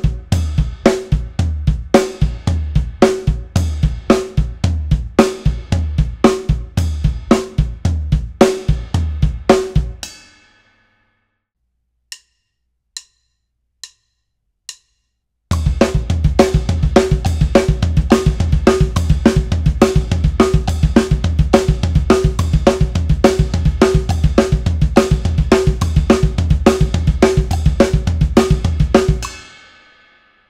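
Acoustic drum kit playing a 16th-triplet hand-and-foot split pattern, bass drum strokes woven between the hands on toms, snare and cymbals. It stops about ten seconds in, four light clicks count off, and the pattern starts again at a quicker pace until just before the end.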